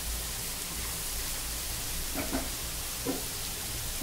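Diced bottle gourd and dry red chillies sizzling steadily in oil in a nonstick frying pan, with a couple of faint brief sounds about two and three seconds in.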